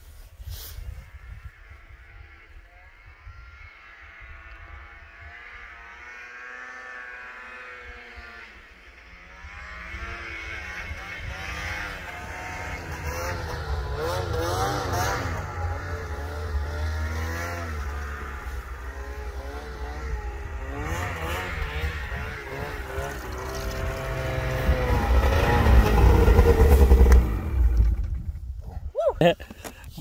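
Snowmobile engine running and revving as it is ridden over open snow, faint at first and growing steadily louder as it comes nearer. It is loudest near the end, then drops off abruptly just before the end.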